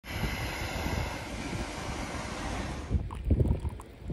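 Propane camp-stove burner hissing steadily under a pot of water that is heating up. The hiss stops about three seconds in, and a few low knocks follow as the pot is handled.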